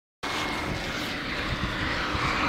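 Steady rushing noise of a bicycle being ridden over asphalt, with wind on the microphone; it begins a moment after the start.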